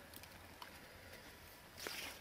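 Near silence with a couple of faint ticks, then a brief soft rustle near the end.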